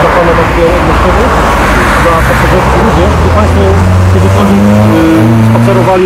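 Road traffic noise: cars running past with a steady rush, and in the second half an engine hum that steps up in pitch.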